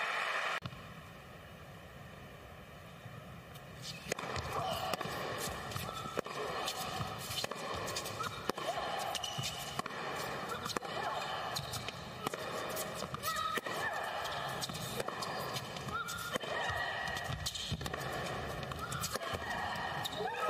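Tennis rally on an indoor hard court: sharp racquet strikes on the ball and short shoe squeaks over a steady arena background. The first few seconds are quieter, before play starts.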